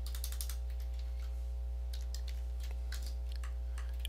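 Computer keyboard keystrokes, a few scattered clicks in short groups, over a steady low hum.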